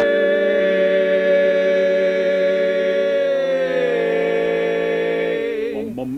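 Barbershop quartet of four men singing a cappella, holding one long sustained chord. A little past halfway one voice slides down to a lower note, and the chord releases shortly before the end as the next phrase begins.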